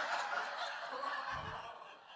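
Live audience laughing at a joke, the laughter dying away steadily over about two seconds.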